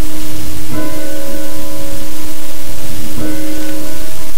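A church bell tolling, struck about a second in and again near the end, each stroke ringing on until the next. A steady hiss lies underneath.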